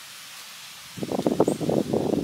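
Faint steady hiss, then about a second in a loud, irregular rustling and crackling starts and keeps going, like close movement through dry grass or against the microphone.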